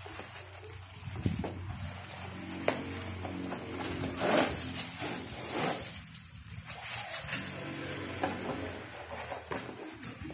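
Cardboard box and plastic wrapping being handled: rustling and crinkling, loudest in a couple of bursts around the middle.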